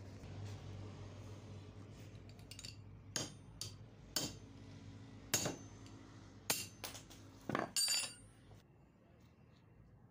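Metal tools and water-pump parts knocking and clinking: about eight sharp metallic strikes spread over several seconds, the last few in a quick cluster with a brief ringing tail.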